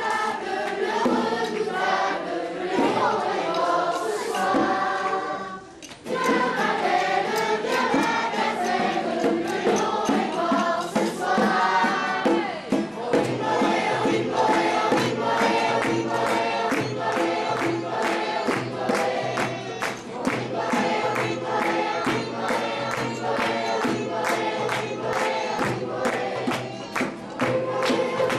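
Choir of children and adults singing a song with instrumental accompaniment. The singing breaks off briefly about six seconds in, and from about halfway a steady beat of regular strokes runs under it.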